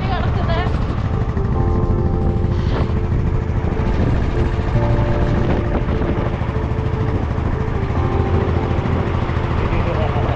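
Motorcycle engine running steadily while riding, with wind and road rumble on the camera microphone.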